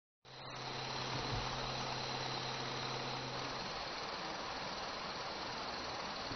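Steady background din of a construction site, with a low machine hum underneath that stops a little past halfway. It starts abruptly after a moment of silence.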